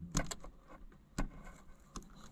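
A few faint clicks and light rustling as a screwdriver tip prods and moves wires in a car's wiring harness, with one sharper click a little past a second in.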